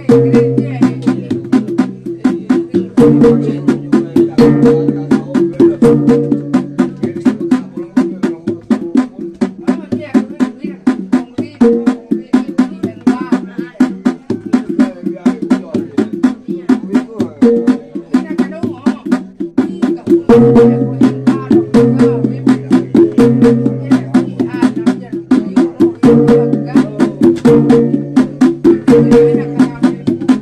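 Traditional Sumbanese funeral percussion (tabbung) from gongs and a drum, played as mourning music. Rapid, steady strokes go on over a repeating pattern of ringing gong notes.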